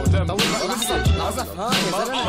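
Arabic hip-hop theme song: a male voice rapping quickly over a heavy, bass-driven beat.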